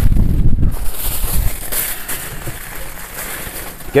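Aluminium foil crinkling as a foil-wrapped parcel is pressed and handled, with wind rumbling on the microphone, heaviest in the first second and a half.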